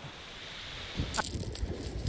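A faint steady wash of surf, then about a second in a sharp click followed by irregular low knocks and rustling: close handling noise over beach shingle as bait is threaded onto a hook.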